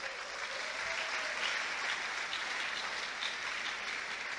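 An audience applauding, a steady patter of many hands clapping.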